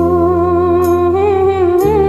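A woman humming a long, wavering held melody over a karaoke backing track. Low bass notes sit underneath and change shortly before the end, with two light cymbal taps.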